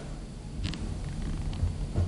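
Low, steady rumble of room ambience with a faint pulsing hum, broken by a short sharp click about two-thirds of a second in and a fainter one later.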